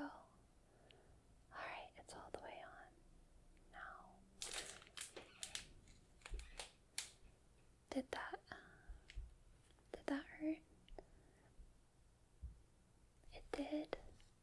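Duct tape being ripped off in a short run of sharp tearing sounds about four to five seconds in, with a few more small tape sounds just after. Soft whispered vocal sounds come later.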